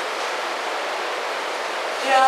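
A steady, even rushing noise with no pitch, part of a stage performance's played soundscape.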